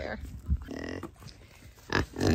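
A kunekune piglet gives one short low grunt about a second in, just after a dull knock.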